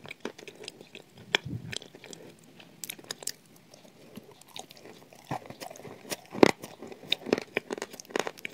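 Close-up biting and chewing of crumbly shortbread spread with chocolate cream: scattered soft crunches and wet mouth clicks, louder and more frequent in the second half.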